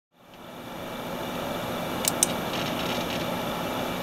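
Steady background room noise with a faint hum, fading in from silence over the first second, with two sharp clicks about two seconds in.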